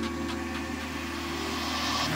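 Electronic dance music breakdown: the drums drop out, leaving a sustained low synth bass drone with a few steady higher tones above it, slowly swelling in loudness.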